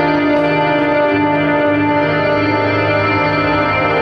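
Electric guitar played through effects with echo and chorus: long held notes that change pitch every second or so, over a steady low drone.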